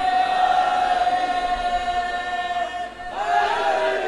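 Large crowd of men chanting in unison in answer to a preacher, holding one long note. The chant breaks off about three seconds in, and a fresh chant starts near the end.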